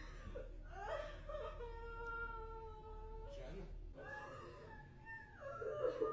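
A woman crying in grief: two long, drawn-out wailing sobs with a gasping breath between them about three and a half seconds in.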